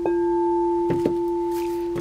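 A singing bowl rings with one steady low tone and a fainter higher one, slowly fading, after being struck just before. Two light knocks come through it, one about a second in.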